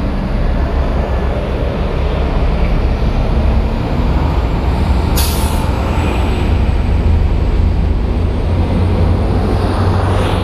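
Neoplan bus engine idling with a steady low rumble, with a short burst of air-brake hiss about five seconds in.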